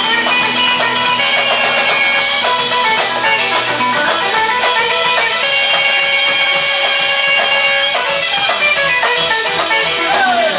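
Rockabilly band playing live and loud, with electric guitar over upright bass and drums.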